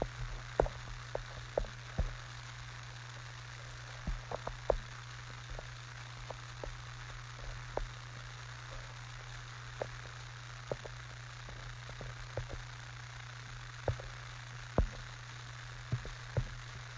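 Irregular light clicks and taps, roughly one or two a second, over a steady low hum and hiss: handling noise of a phone held close to its microphone.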